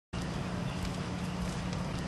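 Steady low hum and hiss of background noise, with a few faint, irregular taps.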